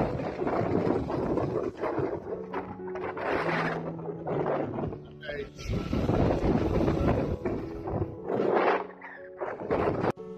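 Wind buffeting a phone microphone over rough, breaking storm surf, in loud irregular gusts. Background music with sustained low notes comes in about two seconds in, and a man says "all right".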